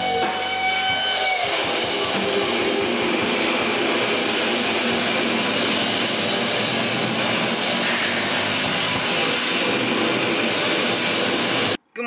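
Live rock band playing: electric guitar, bass guitar and drum kit, with a held note for the first second and a half before the full band carries on. The music cuts off suddenly just before the end.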